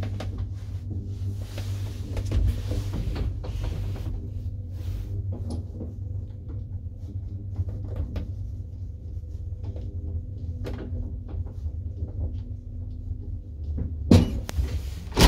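Car of a 1960s Paravia traction elevator travelling in its shaft: a steady low hum from the machinery, with scattered clicks and rattles from the car and its wooden folding doors.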